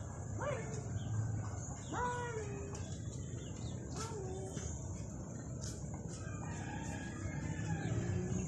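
Domestic chickens calling: three short, separate pitched calls that rise, hold and fall, about half a second, two seconds and four seconds in, the middle one the longest. A steady high hiss sits underneath.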